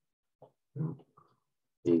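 A man's voice making a few short, low mumbled sounds under his breath, not clear words, then starting to speak near the end.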